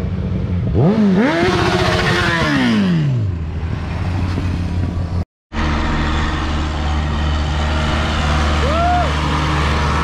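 A motorcycle accelerates past. Its engine note climbs, dips once at a gear change, climbs again, then falls away as it goes by, over a steady low engine drone. After a sudden cut the low drone of idling and passing engines carries on, with one short rev blip near the end.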